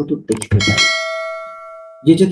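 A bell-like chime sound effect from a subscribe-button animation, struck once about half a second in and ringing down slowly over about a second and a half.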